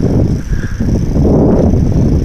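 Steady low rush of wind on the microphone while riding a bicycle along a paved path, mixed with the bike's rolling noise.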